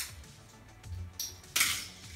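Plastic Lego bricks being handled and pressed back together: a few sharp clicks, then a louder short clatter near the end.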